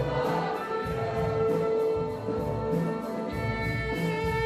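Youth string orchestra of violins and violas playing together with a mixed choir singing, with one note held strongly through the middle.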